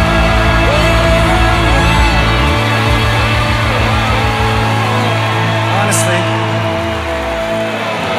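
Live worship band holding sustained chords, the bass dropping out about a third of the way in and the lowest notes thinning further near the end, with a voice gliding up and down over it.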